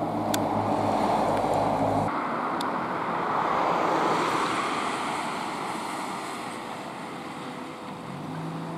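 A vehicle engine running with a steady low hum. After an abrupt change about two seconds in, road traffic noise swells and then slowly fades as vehicles pass.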